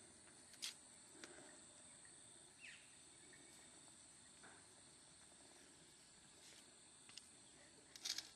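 Near silence: quiet outdoor garden ambience with a faint, steady high-pitched drone and a few faint ticks.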